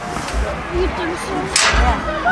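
Faint, scattered voices of players and spectators around a football field, with low rumbles about half a second and a second in, and a short loud hiss near the end.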